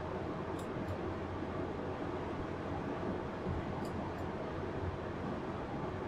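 Steady room tone of background hiss and a low hum, with a few faint light clicks about half a second in, near one second and around four seconds.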